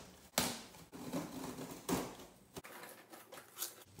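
A cardboard shipping box being opened by hand: packing tape slit and torn and the flaps pulled back, heard as several short rips and rustles.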